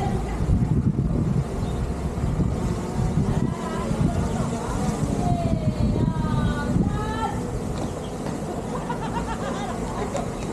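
DJI Mini 4 Pro quadcopter drone flying close overhead, its propeller hum mixed with heavy low rumbling noise on the microphone. Voices of people nearby can be heard here and there.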